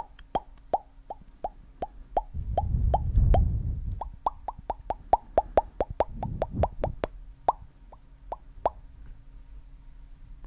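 Close-miked mouth popping sounds, a fast train of short wet pops about three to five a second, thinning out near the end. A low rumble comes in under them around the third second and again near the seventh second.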